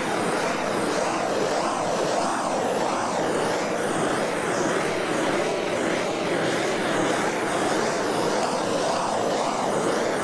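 Handheld gas torch burning with a steady rushing hiss as its flame is played over wet countertop epoxy to heat the surface.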